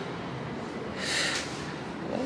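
A woman takes one short audible breath about a second in, lasting about half a second.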